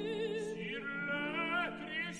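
Operatic duet: a soprano and a tenor singing in Italian with wide vibrato over sustained orchestral accompaniment.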